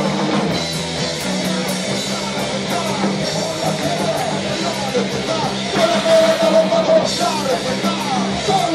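Live punk rock band playing at full volume: electric guitar, electric bass and a drum kit. One note is held for about a second around six seconds in.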